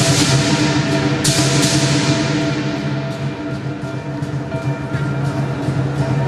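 Lion dance percussion: drum and clashing cymbals keeping the beat, with loud cymbal crashes near the start and about a second in, then lighter, quicker strikes.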